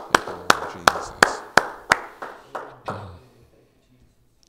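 One person clapping their hands steadily, about three claps a second, each clap echoing in the room. The claps fade and stop about three seconds in.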